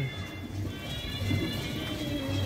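A handheld sparkler fizzing and crackling as it burns, over background music with a steady beat.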